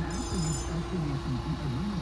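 A high-pitched electronic tone sounds for about the first half-second, over faint distant voices and a low steady rumble.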